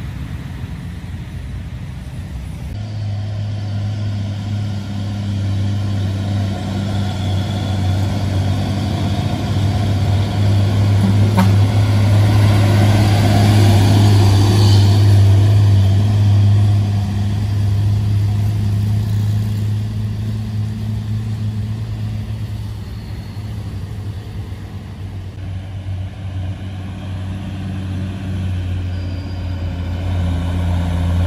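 Diesel engines of heavy truck-and-trailer rigs loaded with sugarcane, labouring steadily up a hill in a low gear; the sound swells to its loudest about midway as one rig passes close, then eases off.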